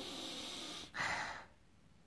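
A man sniffing a glass of ale to take in its aroma: one long sniff through the nose, then a shorter, louder breath about a second in.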